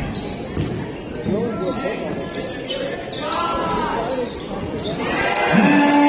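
Basketball game in a gym: crowd voices and chatter echo in the hall, with ball bounces and short squeaks, likely sneakers on the court. Near the end a long, steady horn sounds, typical of a scoreboard horn.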